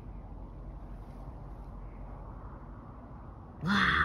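Steady, even background noise with no distinct events. A woman's voice starts near the end.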